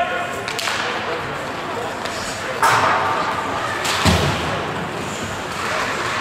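Ice hockey play on an indoor rink: sharp clacks of sticks and puck, one about half a second in and another a couple of seconds later, then a heavier thud about four seconds in, over a hum of voices in the arena.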